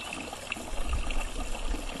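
Steady rushing background noise, with irregular deep rumbling starting under a second in.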